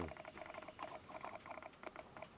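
Faint, fast ticking in short irregular runs, about ten small ticks a second, with brief pauses between runs.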